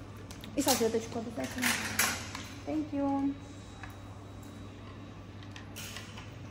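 Hard plastic 3D glasses clattering briefly against a wire rack as they are taken out of a sterilising cabinet, mixed with short bits of voice, over a steady low hum.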